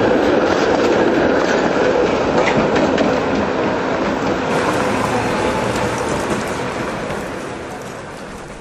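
A streetcar running along its rails in street traffic, with a steady rumble and a few faint clicks, getting quieter over the last few seconds as it moves away.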